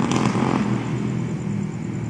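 Motorcycle engines running at a distance, a steady low drone.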